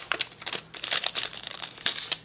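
Foil booster-pack wrapper crinkling in the hands as the trading cards are pulled out of it, a rapid run of small crackles.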